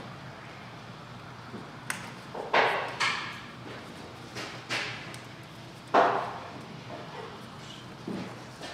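A handful of sharp knocks and clacks of hard parts and tools being handled in a car's engine bay, the loudest about six seconds in.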